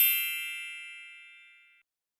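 A bright, bell-like chime struck once, its several high ringing tones fading away over about a second and a half.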